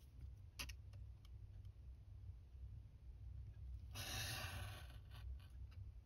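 Faint scratch of a craft knife blade drawing through paper along a metal ruler, about four seconds in, with a few small clicks of the blade and ruler against the cutting mat before it.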